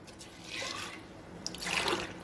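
Water poured from a steel glass into a pressure cooker over soaked lentils and kidney beans, splashing and gurgling. It is faint about half a second in and loudest near the end.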